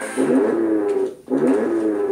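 A high voice singing two drawn-out notes in a row, each about a second long, sliding up and then held.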